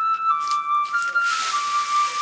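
Background film score: a high, flute-like melody of long held notes that step mostly downward, with a burst of hiss about halfway through.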